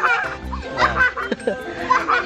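Laughter, a baby's among it, over background music.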